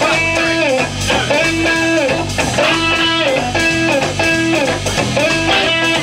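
Live electric band playing an instrumental passage: an electric guitar repeats a short riff with bent notes about once a second over bass guitar and drums.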